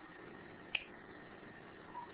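Faint steady hiss of a recording's background noise, broken by a single short, sharp click a little under a second in and a faint brief tone near the end.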